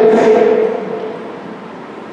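A man's voice holding a steady, chant-like note trails off about half a second in, leaving a quiet pause with faint room noise.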